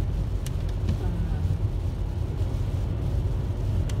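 Inside a car's cabin on a rain-wet highway: steady low rumble of engine and tyre noise, with a few brief faint clicks.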